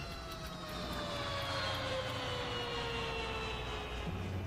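Film sound effect: a whine of several tones together sliding slowly and evenly down in pitch, like a machine powering down, over a low steady hum.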